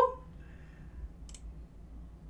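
A single computer mouse click about a second in, over quiet room tone.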